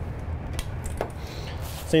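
Faint light metal clinks and handling noise from an aluminium horse-trailer stall divider and its latch being taken hold of, over a steady low rumble.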